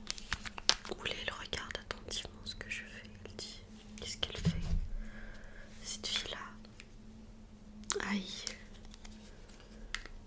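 Soft whispering over light clicks and taps from a small plastic skincare container being handled; the clicks come thickest in the first two seconds.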